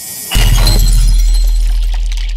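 Logo-reveal sound effect: a rising high hiss swells into a sudden impact about a third of a second in. A deep bass boom and a glassy shattering shimmer follow and fade slowly.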